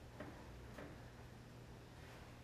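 Near silence: room tone with a low steady hum and two faint clicks, about half a second apart, near the start.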